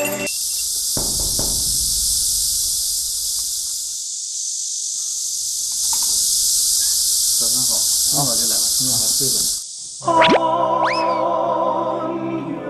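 Cicadas buzzing in a steady, high-pitched chorus that cuts off suddenly about two seconds before the end. Music with sliding notes follows.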